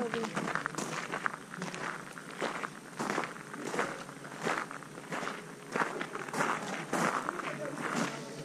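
Footsteps crunching on gravel at a steady walking pace, about one and a half steps a second.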